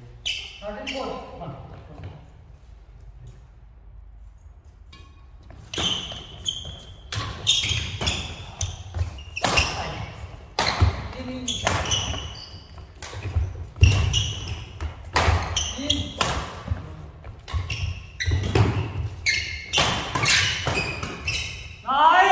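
Badminton doubles rally starting about five seconds in: repeated sharp racket strikes on the shuttlecock and footfalls on the court floor, echoing in the hall, with players' voices among them.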